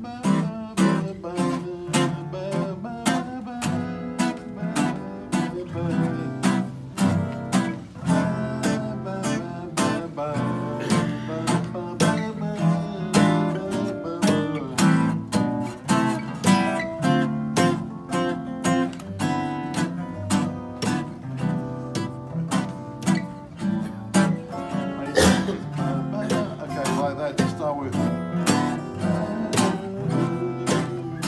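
Several acoustic guitars playing together in a jam: a strummed rhythm under picked melody lines.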